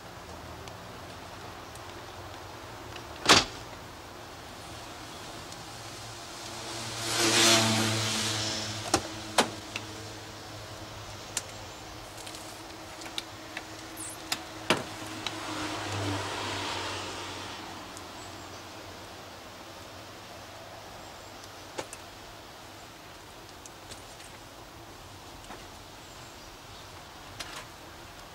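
A door bangs shut once, about three seconds in. A car passes, swelling and fading, followed by scattered clicks and knocks of a car door and a manual wheelchair being handled, and a second, quieter vehicle pass.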